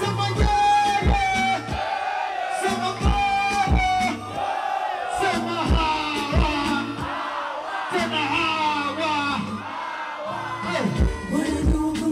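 Live music played through a concert sound system: a sung vocal line over a steady kick-drum beat and bass.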